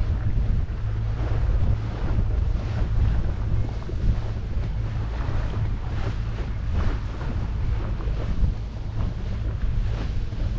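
Wind buffeting the microphone over the steady low drone of a motorboat's engine, with water washing against the hull.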